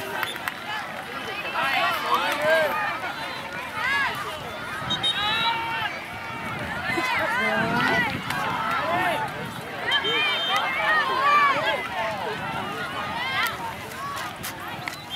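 Many voices of spectators and players calling and talking at once across an outdoor soccer field, none of them clear, with two brief high steady tones about 5 and 10 seconds in.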